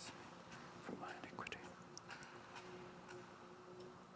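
A man's quiet prayer said under the breath, faint and whispered, with a few light clicks over a faint steady hum.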